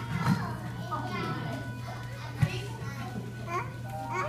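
Young children's voices chattering and calling out over quieter background music, with a single thump about two and a half seconds in.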